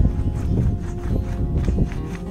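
Foam paint roller rolled back and forth over a stretched canvas, giving a low rumble with irregular soft knocks, over music.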